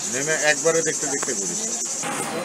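Cicadas buzzing steadily at a high pitch, with a person's voice talking over them.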